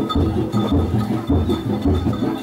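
Bantengan accompaniment music: a fast, steady low drum beat, about three beats a second, with thin high ringing notes held over it.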